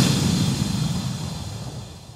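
Cinematic intro sound effect for a logo reveal: a rushing swell of noise over a low rumble that fades steadily away.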